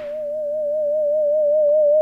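Synthesized audio from a simulated regenerative AM radio receiver: one steady whistling tone with a fast, even warble, swelling louder as the regeneration (feedback) is turned up and the receiver locks onto the signal.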